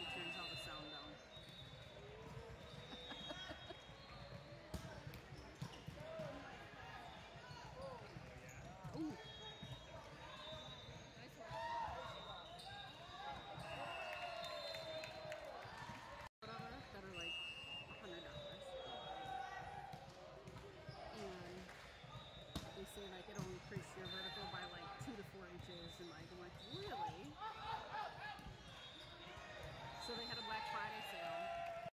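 Echoing gym sound of a volleyball match: sneakers squeaking on the hardwood court, balls thudding and bouncing, and players and spectators calling out indistinctly. The sound drops out for an instant about halfway through.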